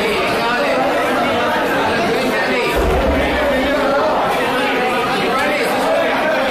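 Many people talking at once in a large hall, a continuous babble of overlapping, indistinct voices. A brief low bump comes about three seconds in.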